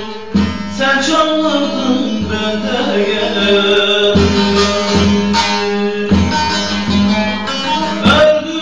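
A man singing to his own long-necked bağlama (saz), plucked and strummed in a steady rhythm under the voice.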